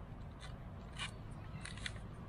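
A fabric strap being handled and pulled through its buckle, giving a few short, faint scratchy rasps.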